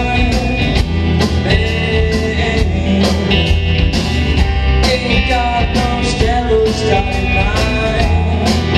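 Live rock band playing a song: two electric guitars, electric bass and a drum kit keeping a steady beat.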